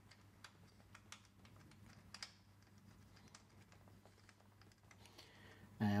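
Faint, scattered small metal clicks and taps as a screw is fitted by hand into the seat's metal retaining bracket, with an L-shaped key knocking against the fittings; one click about two seconds in is a little louder. A faint steady low hum runs underneath.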